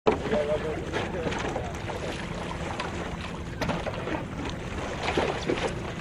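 Water lapping and splashing around stand-up paddle boards as riders get on them, with wind on the microphone and faint voices in the background.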